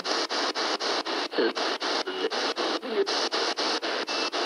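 P-SB7 spirit box sweeping through radio stations: bursts of static chopped about six or seven times a second, with brief snatches of broadcast sound caught between them.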